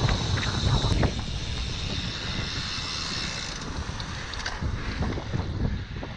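Wind rushing over the microphone of a camera riding on a moving road bike: a steady low rumble under a hiss, the high part of the hiss fading about halfway through.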